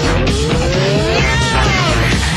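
Loud rock music, with pitched lines sliding up and down through it.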